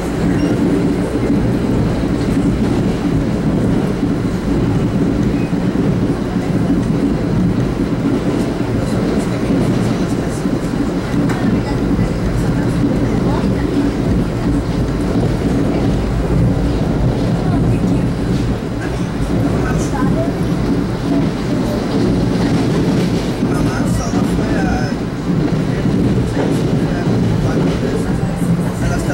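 Steady rumble and rattle of a passenger train running at speed, heard from inside a 1982 Comet IIM coach: steel wheels rolling on the rails, unbroken throughout.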